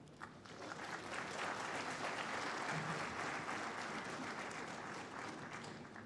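Audience applauding. It swells over the first second or two and then slowly tapers off.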